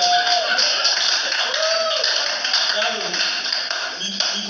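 A man's voice through a handheld microphone making drawn-out sounds that rise and fall in pitch, with scattered sharp taps.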